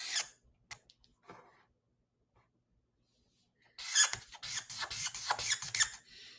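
A drawing tool scribbling on paper. There is a quick stroke at the start and a few light marks, then from about four seconds in a burst of rapid back-and-forth scribbling, shading in a dark area.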